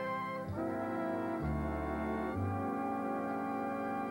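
Jazz big band brass section, trumpets and trombones, playing slow, sustained chords with bass notes underneath. The chord changes about once a second.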